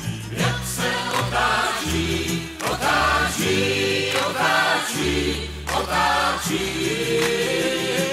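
Folk music: mixed voices singing together in harmony over acoustic guitar and a double bass playing one low note about every second.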